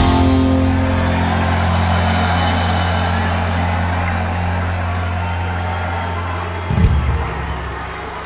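Live rock band's closing chord held on guitar and bass, ringing and slowly fading, over audience cheering. A low hit comes near the end, and a different low note carries on after it.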